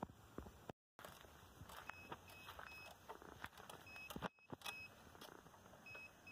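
Near silence: faint outdoor background with a few soft clicks and small groups of short, high-pitched beeps, each group three quick pips.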